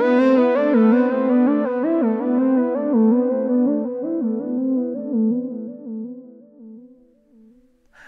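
Modular synthesizer playing a fast, stepped, repeating sequence of notes. Its tone starts bright, then grows steadily darker as the filter closes, and it fades out near the end.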